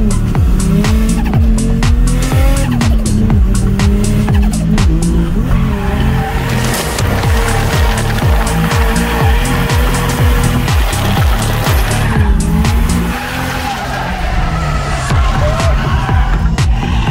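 Turbocharged RB30 straight-six of an R31 Skyline wagon held high in the revs while the tyres squeal through a drift, heard from inside the cabin. Background music with a steady beat runs underneath. The tyre noise is heaviest in the middle stretch and eases off a little near the end.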